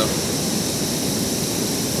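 Water rushing steadily: an even, unbroken hiss with no rhythm and no pauses.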